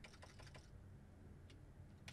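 Faint computer keyboard typing: a few scattered, light key clicks as a file name is typed.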